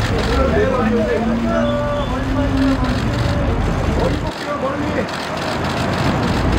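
Photographers' voices calling out over a steady low rumble. One voice holds a long drawn-out call in the first half. The rumble drops away briefly a little past the middle.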